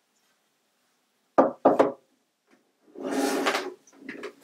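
Hollow vinyl shutter profile pieces knocking twice, sharply, about a second and a half in, followed a second later by a rough sliding scrape of plastic being moved on the wooden desk.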